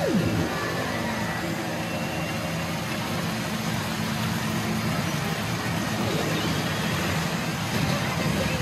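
Constant din of a pachinko parlor: rows of machines' electronic effects and clattering steel balls blending into one steady wash of noise, with a sweeping electronic tone at the very start.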